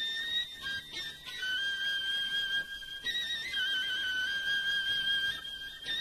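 Instrumental passage of Arabic tarab music: a high, pure-toned, flute-like lead instrument plays long held notes that step between nearby pitches.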